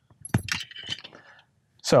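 Ford transponder keys on a metal key ring jangling in a hand, with several sharp metallic clinks and a short ring in the first second and a half.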